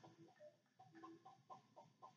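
Near silence with faint, short clucking calls of barnyard fowl, a dozen or so brief notes in quick succession.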